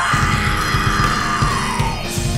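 Symphonic metal song playing: a long held high note slides slowly down in pitch across the two seconds over rapid drum beats.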